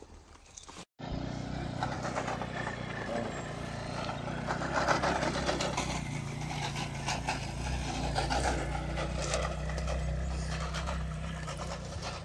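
A motor vehicle's engine running steadily with a low hum and road noise. It starts abruptly about a second in, after a brief dropout.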